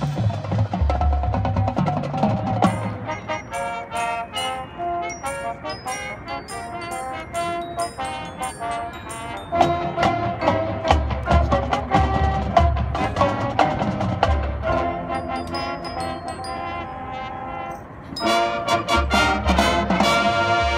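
Marching band playing its field show: mallet percussion (marimbas and xylophone-type keyboards) plays a stream of quick struck notes over low brass and bass drum swells. The full band comes back in loudly about two seconds before the end.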